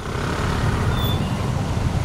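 Steady city road traffic noise from passing vehicles, heaviest in the low end, with a brief high chirp about a second in.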